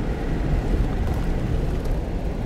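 Car driving on a snow-packed road, heard from inside the cabin: a steady low rumble of engine and tyres.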